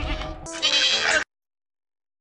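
A goat bleating once, a short loud call starting about half a second in, over background music; the sound cuts off abruptly just past the middle.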